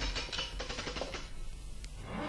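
Audio-play sound effect over music: a fast, dense run of clicks and rattling, marking the magic horse being set going as its peg is turned.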